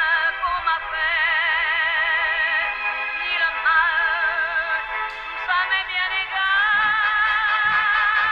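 Operatic singing with a wide vibrato and long held notes, playing from a small pocket transistor radio. A few low thuds come in near the end.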